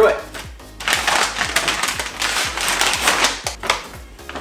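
Brown kraft paper wrapping being torn and crumpled open on a parcel: a rough, crackling rip that starts about a second in and runs for about three seconds.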